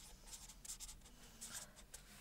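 Felt-tip marker writing on paper: several short, faint scratching strokes as a word is written out by hand.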